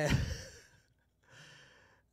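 A man's soft, breathy laugh on the exhale close to the microphone, fading out within about a second, followed by a faint breath.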